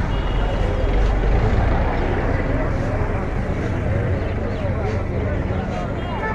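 Busy street-market ambience: many people talking at once over the low, steady rumble of a bus engine running close by.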